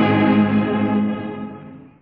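Church orchestra holding a chord of a hymn, dying away over the last second to near silence. The recording is dull, old cassette tape with the high end cut off.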